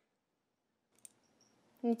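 Near silence with one faint click about a second in, then a woman's voice begins near the end.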